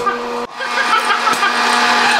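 Hot-air popcorn maker running: its fan motor hums steadily under a rush of blown air, with a few faint pops from the kernels inside.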